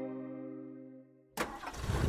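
A held musical chord fades out. After a brief gap, a vehicle engine bursts into life with a sudden, louder rush of engine noise near the end.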